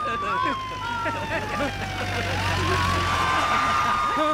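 Police siren wailing: its pitch slides slowly down, sweeps back up about two and a half seconds in, and holds high. A low rumble and hiss swell under it in the second half.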